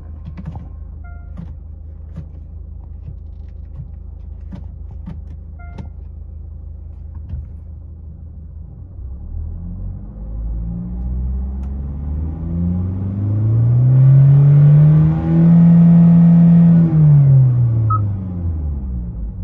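2016 Kia Sportage's 1.7-litre diesel engine idling in Park, then revved. The pitch climbs steadily over several seconds, holds high for a couple of seconds, then drops back near the end.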